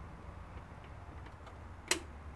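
A single sharp click near the end as the 3D printer's power switch is flipped on, over a faint steady low hum; the always-enabled Z-axis stepper motors make no clear clunk as they energise.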